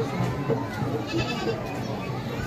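A goat bleating among a crowd's voices, with a steady beat of about two strokes a second under it.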